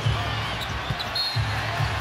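A basketball bouncing a few times on a hardwood court, with low music underneath.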